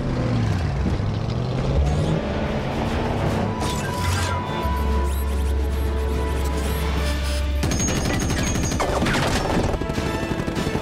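Action film soundtrack: dramatic score mixed with gunfire and booms. A deep rumble holds through the middle, then rapid bursts of shots follow for the last couple of seconds.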